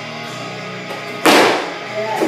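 Guitar background music, and about a second in one loud, sudden crash as a loaded barbell is driven overhead in a split jerk: the lifter's feet slapping the platform and the plates rattling, fading within half a second.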